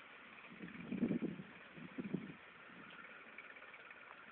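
Faint tractor engine running, with louder low surges about one and two seconds in.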